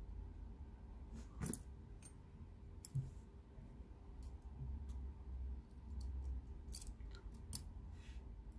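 Small, sharp metallic clicks, a few scattered ones, as steel tweezers pull driver pins from a brass lock cylinder and set them down in a pin tray.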